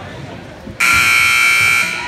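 Gym scoreboard buzzer sounding once for about a second, a loud harsh electronic buzz that starts and cuts off abruptly, over the murmur of the crowd.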